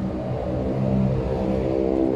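A car engine running at a steady idle, an even, continuous hum.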